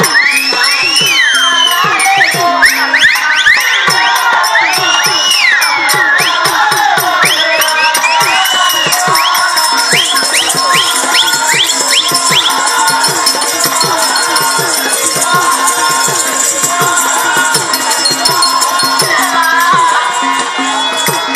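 Live folk-theatre accompaniment: a double-headed barrel drum played in a fast, steady rhythm with jingling small cymbals or bells, over a steady drone, while high melody notes swoop up and down.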